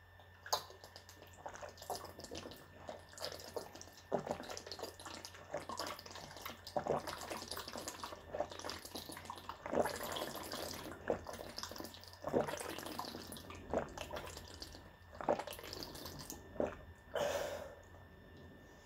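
A person drinking water from a bottle in a long series of gulps, with the water gurgling in the bottle and a throat sound at each swallow.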